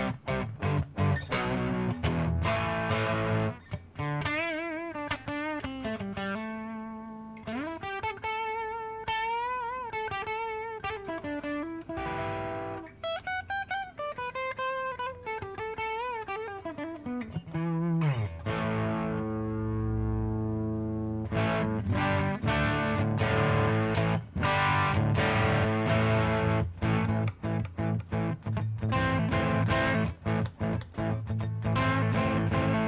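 Fret King Super Hybrid electric guitar played with an overdriven crunch tone: picked chords and riffs, then a run of sustained single notes with vibrato and bends. A sliding drop in pitch comes about eighteen seconds in, followed by rhythmic chord strumming.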